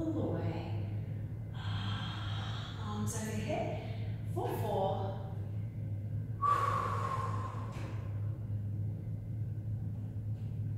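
A woman breathing audibly with effort during a slow abdominal roll-down and roll-up. There are several forceful breaths, the longest about six and a half seconds in, falling in pitch like a sigh, with a few soft voiced sounds, over a steady low hum.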